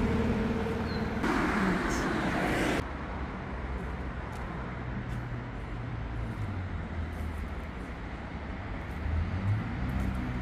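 Steady road and engine noise of a moving vehicle: a hissy rush for the first three seconds that cuts off abruptly, then a quieter low rumble and hum.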